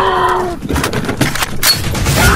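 A brief cry that sags slightly in pitch, followed by several sharp cracks or hits in the second half.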